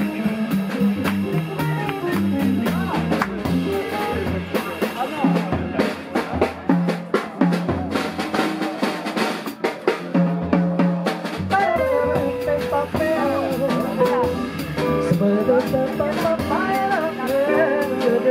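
Live jazz combo playing on stage: a drum kit with busy snare and cymbal strokes over a stepping bass line, with guitar and keyboard. About two thirds of the way through, a wavering melody line comes in over the top.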